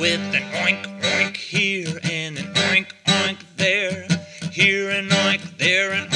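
A man's voice singing to a strummed acoustic guitar, the guitar chords holding steady under short sung phrases.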